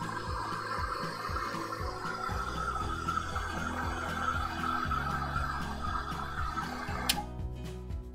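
Background music with a steady bass line, over a hand-held hair dryer blowing to dry wet gouache paint. The dryer stops with a click about seven seconds in, leaving the music alone.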